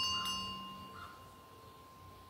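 Small metal hand bell ringing with a clear, high, bell-like tone that fades slowly, with a second light tap of the clapper about a quarter second in.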